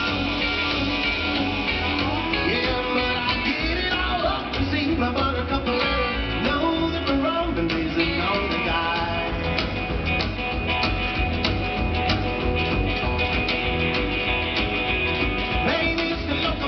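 Live rockabilly band playing loudly through a Nexo line-array PA: electric guitar and upright double bass over a steady beat, with singing, heard from within the crowd in a large reverberant hall.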